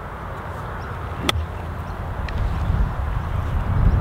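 A golf iron striking a ball off the turf on a short pitch shot: one sharp, crisp click about a second in. Under it, a low steady rumble that builds toward the end.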